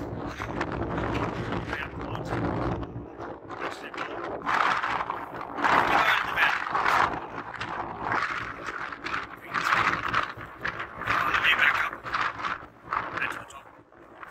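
A man talking, his words unclear, with wind rumbling on the microphone during the first few seconds.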